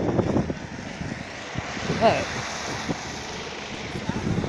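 A car driving past close by on a wet road: a steady tyre hiss that swells and then eases.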